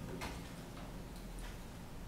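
Quiet room with a few faint, irregularly spaced clicks; the piano has stopped.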